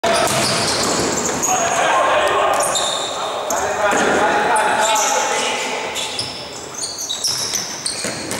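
Futsal being played on an indoor court: the ball is kicked and bounces on the hall floor while shoes give short high squeaks. Players shout throughout, and the hall echoes.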